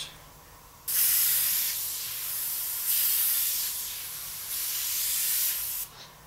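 Gravity-feed airbrush hissing as it sprays paint in dagger strokes. The hiss starts about a second in, swells and eases over three passes, and stops just before the end.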